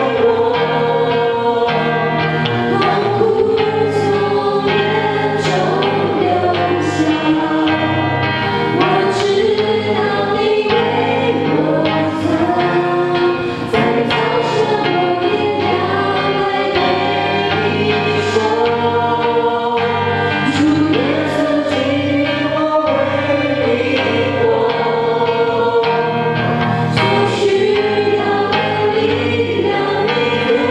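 A small mixed group of men's and women's voices singing a Christian hymn together into microphones, with acoustic guitar accompaniment.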